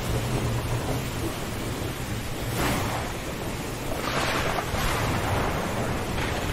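Thunderstorm ambience: a continuous low rumble under a rushing wash of wind and surf, which swells twice, about two and a half and about four seconds in.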